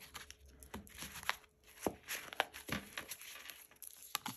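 Tarot cards being handled and shuffled by hand: an irregular run of light snaps, flicks and slides of card stock.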